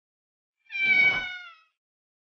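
A kitten meowing once, a single call under a second long that dips slightly in pitch as it fades.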